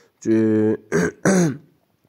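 A man's voice: a drawn-out, level-pitched hesitation sound like "eh", then a brief spoken syllable or two falling in pitch.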